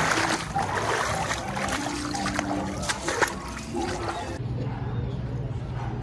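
Shallow floodwater splashing and sloshing as someone wades through it over cobblestones, with repeated sharp splashes, for about four seconds. It then cuts abruptly to a quieter steady low hum.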